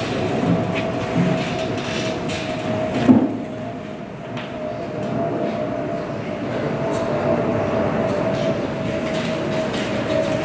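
A steady mechanical hum with one even tone over a low rumbling background, and a single thump about three seconds in.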